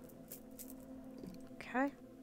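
A few faint ticks over a steady low hum, then a short, louder vocal sound from a woman near the end.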